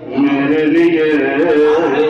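A man's voice reciting a naat into a microphone, in long held notes that waver and bend in pitch, with a short breath at the very start.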